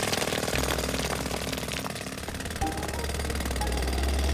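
Jackhammer pounding into asphalt, a fast, continuous rattle with a low rumble underneath.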